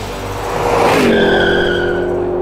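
Tyre-screech sound effect: a rushing swell that turns into a sustained, pitched screech about a second in, its pitch dipping slightly and then holding steady.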